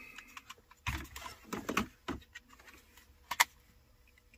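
Plastic centre-console trim clicking and rattling as a piece is worked loose by hand, with a sharper click about three seconds in.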